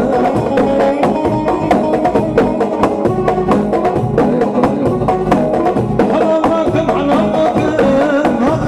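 Live Kurdish halay dance music: an ornamented melody over a fast, steady drumbeat, playing without a break.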